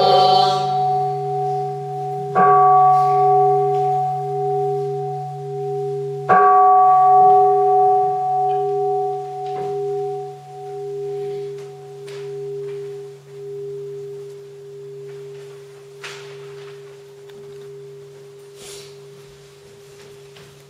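A large bowl bell struck twice, about four seconds apart; each strike rings on with a slowly wavering tone and fades out over the next ten seconds or so.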